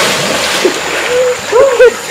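Person plunging into a river pool after a backward jump: water spraying and churning, then slowly settling. A voice gives short calls about a second and a half in.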